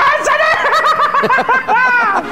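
A person laughing loudly in a high-pitched, rapidly pulsing run of laughter.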